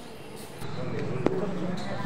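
Indistinct voices of a group over a low, steady background rumble, with one sharp knock about a second and a quarter in.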